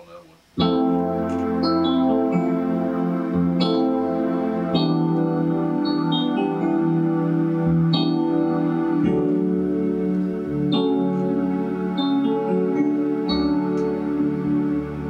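Kurzweil SP76 digital piano played on a layered piano-and-strings sound: a slow ballad of held chords with single high melody notes on top. It comes in with a loud chord about half a second in, and the chord changes every few seconds.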